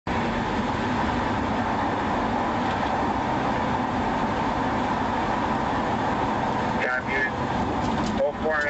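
Steady road and engine noise of a police cruiser driving at highway speed, heard from inside the car. A short burst of radio voice comes in near the end.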